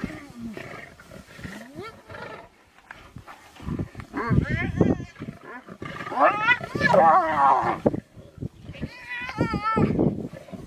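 Spotted hyenas giggling in bursts of high, rapidly wavering calls, about four seconds in, again from about six to eight seconds and near the end, over lower growling from lions, the sound of a squabble at a kill.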